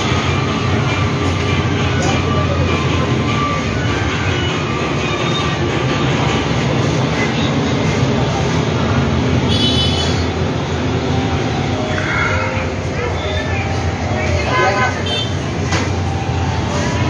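A steady, loud low rumble runs throughout, with indistinct voices heard now and then.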